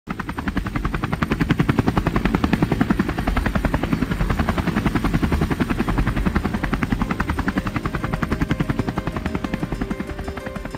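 Helicopter rotor sound effect: a fast, even chopping pulse over a low rumble that starts abruptly and eases off slightly near the end.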